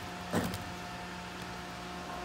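A single short clack of the disassembled pump's motor parts being handled and turned by hand, about half a second in, over a steady hum with a few constant tones.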